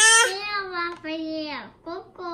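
A baby vocalizing in high, drawn-out, vowel-like sounds, about three in a row, each sliding down in pitch.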